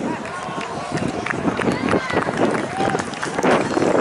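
Voices of several people talking close by, outdoors, with no single loud event.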